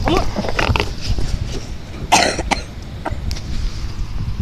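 A person coughing, with one harsh cough about two seconds in, over a steady low rumble of wind on the microphone.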